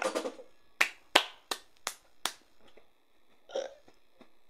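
Five sharp finger snaps in an even rhythm, about three a second, beginning about a second in. A tail of laughter is heard just before them, and a short vocal sound comes near the end.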